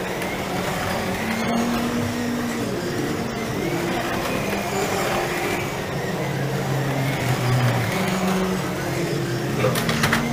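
Several 1/24-scale slot cars' electric motors whining as they lap the track, the pitch repeatedly rising and falling as the cars speed up and slow down.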